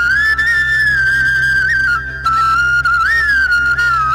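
Slow solo flute melody: a single sustained line with small pitch bends and grace notes, pausing briefly about halfway, over a steady low hum.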